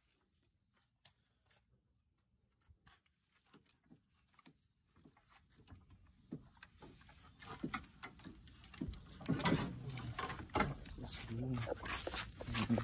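Faint, scattered clicks and taps of hand work around an engine bay, near silent at first and getting busier and louder in the second half. A person's voice comes in briefly near the end.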